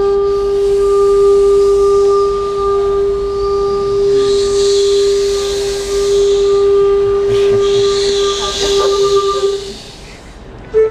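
A long wooden end-blown flute holding one steady note for nearly ten seconds, with breathy air noise that swells twice. The note stops just before the end.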